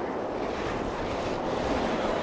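A steady, unpitched rushing noise that swells in just before and holds evenly. It is the sound effect laid under an animated end-card logo.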